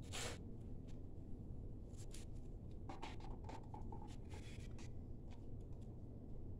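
A few short, faint scrapes and rubs from handling acrylic paint cups, over a low steady room hum.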